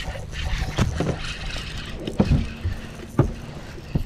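Several dull knocks and thumps from movement aboard a bass boat, over a low steady rumble; the loudest knock comes about halfway through.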